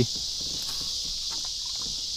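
A steady, high-pitched chorus of insects, with a few faint ticks and knocks.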